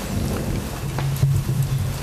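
A steady rushing noise with a faint low hum: the background noise of the courtroom microphone feed in a pause between spoken sentences.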